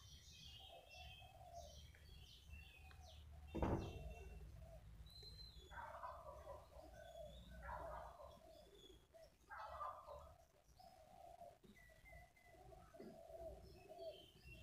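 Faint bird calls in the background over near silence, with a single short knock about four seconds in.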